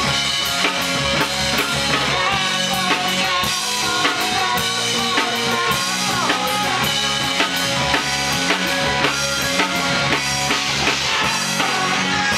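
A rock band playing live in a rehearsal room: a drum kit with cymbals and kick drum keeping a steady beat under electric guitars, with no singing.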